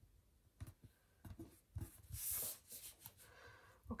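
Paper being handled on a tabletop: a few soft taps and knocks, then a brief rustle of paper sliding about two seconds in, as planner pages are shifted and pressed flat by hand.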